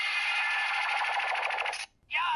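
Electronic sound effect from the Bandai CSM Drag Visor toy gauntlet's small speaker: a loud, rapidly pulsing rasp lasting nearly two seconds that cuts off suddenly near the end.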